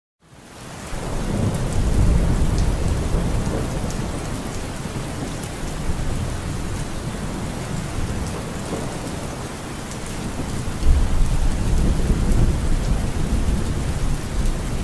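Rainstorm recording: steady rain with low rolling thunder. It fades in from silence over the first second or so, with heavier rumbles about two seconds in and again a few seconds before the end.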